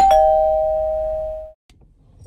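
A two-note chime sound effect: a high note followed a split second later by a lower one, both ringing on and fading slowly together, then cut off about a second and a half in.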